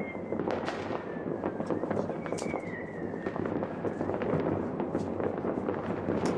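New Year's Eve fireworks and firecrackers going off all around in a continuous crackle of many sharp bangs, some close and some distant. A faint thin whistle slides down in pitch twice.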